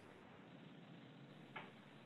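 Near silence: faint room tone over the call, with one brief faint sound about one and a half seconds in.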